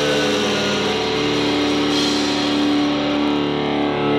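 Live rock band playing an instrumental passage, led by distorted electric guitar holding long notes.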